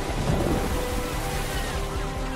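Rough open sea, waves churning and washing in a steady rush with a low rumble underneath.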